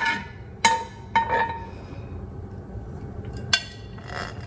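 A metal spoon clinking against a cast-iron skillet while spreading melted ghee in the hot pan. There are three short ringing clinks in the first second and a half and one more near the end.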